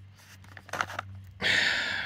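Plastic jerky packet being handled and opened: brief crinkles, then a longer, louder rustle in the second half as the contents are tipped out.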